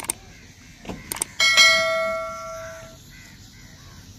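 Subscribe-button animation sound effect: a mouse click, then two quick clicks about a second in, followed by a bright notification-bell ding that rings out and fades over about a second and a half.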